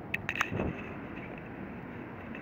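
A few quick light metallic clicks near the start as a spanner and steel bracket knock against the motorcycle's mirror mount while the bracket is being tightened.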